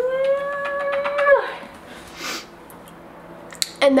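Baby vocalizing: one long, high, held note that falls in pitch as it ends, after about a second and a half, followed by a soft breathy sound.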